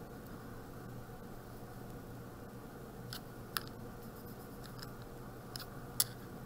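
Pencil drawing on paper: faint scratching of the lead, with a few short ticks, the sharpest about three and a half seconds in.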